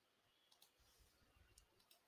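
Near silence, with a few very faint, short clicks.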